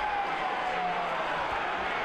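Football stadium crowd noise: a steady hubbub of many supporters' voices, with one faint drawn-out shout slowly falling in pitch in the first second.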